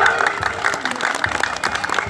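Audience clapping: a spatter of irregular hand claps mixed with crowd noise.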